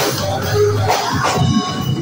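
Live band playing amplified music on electric guitar, bass guitar and drum kit.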